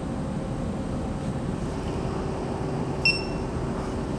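Steady low hum of a Creality CR-10 SE 3D printer standing idle after its self-check, with a faint steady tone joining it a little under two seconds in. About three seconds in, the printer's touchscreen gives a single short, high beep.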